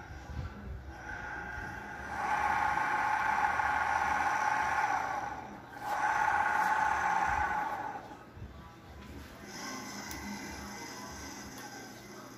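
200-watt friction-drive electric bicycle motor running with a steady whine, its roller turning against the bike's tyre. It starts about two seconds in, stops briefly around halfway, runs again for about two seconds, then gives way to a fainter, higher steady tone.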